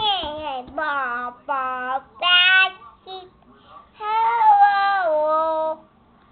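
A young child singing in a series of short phrases with held notes that glide up and down in pitch, the longest note from about four seconds in until near the end.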